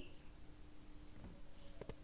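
Faint handling clicks, a few of them through the second half, as a clear plastic cake scraper is worked around whipped cream on a cake turntable, over a faint steady hum.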